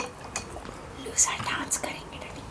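Soft, low speech and whispering, with a few faint clicks.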